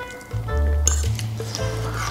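Background music with sustained notes over a bass line that changes pitch, and a light clink of cutlery on a ceramic plate a little under a second in.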